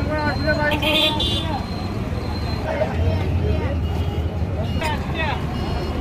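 Talking voices over steady street traffic noise, with a low rumble that comes in about halfway through.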